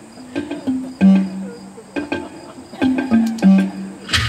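Live instrumental accompaniment: a sparse run of low notes, each struck sharply and ringing briefly, with light percussion ticks over a faint, steady high whine.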